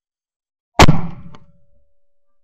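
A single 12-gauge shot from a Davide Pedersoli La Bohemienne side-by-side hammer shotgun, fired just under a second in and very loud as picked up by a camera mounted on the gun. A faint ringing tone lingers for about a second after the report.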